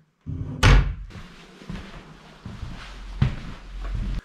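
A wooden wardrobe door banging shut about half a second in, followed by shuffling footsteps and a smaller knock near the end.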